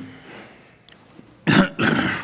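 A person clearing their throat twice, two loud short sounds about a second and a half in, the second longer.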